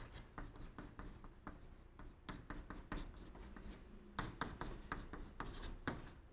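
Chalk on a blackboard: a rapid, irregular run of short taps and scratches as Chinese characters are written stroke by stroke. The strokes grow sharper and closer together about four seconds in.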